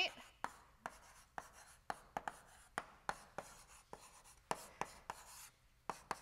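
Chalk writing on a blackboard: an irregular string of sharp taps and short scratches, a few a second, as the chalk strikes and drags across the slate.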